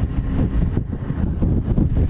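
Yamaha R1 sport bike riding at freeway speed: steady rush of wind and road noise with the engine's low drone underneath.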